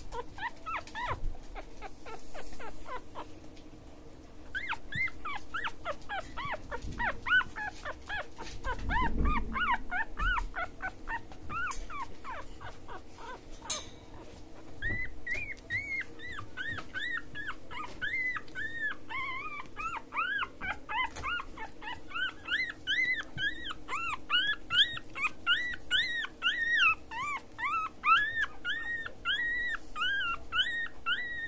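A newborn Australian terrier puppy squeaking and whimpering over and over in short, high, rising-and-falling squeals. They come a few at a time at first and then several a second, almost without a break, through the second half.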